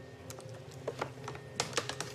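Thick parchment pages of a large old manuscript Quran being handled and turned: a run of short crackles and clicks, sparse at first and several close together in the second half.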